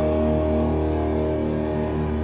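A rock band's electric guitars and bass holding one sustained chord that rings on steadily, with no drum hits.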